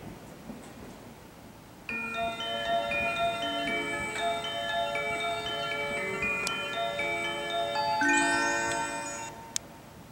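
Platform departure melody: a short chime tune of bright, bell-like electronic notes plays from the station speakers, starting about two seconds in and ending shortly before the end. A single sharp click comes just as it finishes.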